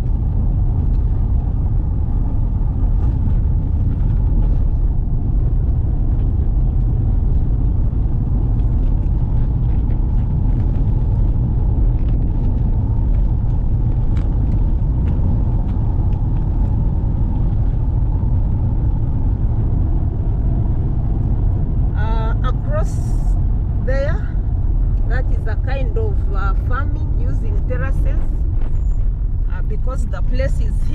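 Car driving on a rough dirt road, heard from inside the cabin: a steady low rumble of engine and tyres on the unpaved surface. Voices talk over it in the last several seconds.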